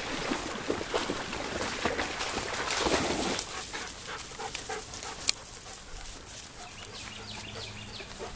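German Shepherd panting while dogs push through grass and brush: dense rustling of vegetation, loudest about three seconds in, with a sharp snap about five seconds in and quieter rustling of footfalls afterwards.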